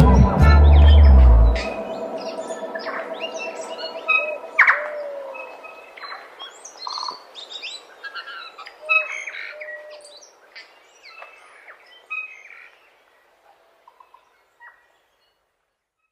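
Music ends with a final low hit about a second and a half in, leaving birds chirping and calling, with a fading tail of the music beneath them; the chirps thin out and fade away to silence near the end.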